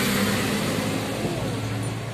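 Car engine and road noise heard from inside the moving car's cabin: a steady rush with a low hum.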